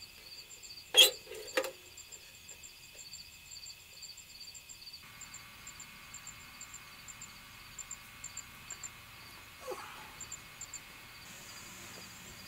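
Crickets chirping in steady short pulses at night, with two sharp knocks about a second in, half a second apart, and a brief falling sound near the ten-second mark.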